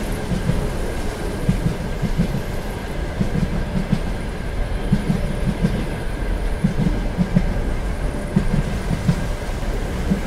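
Ride noise inside a railway carriage: a steady low rumble, with the wheels clacking over rail joints in irregular runs of short knocks.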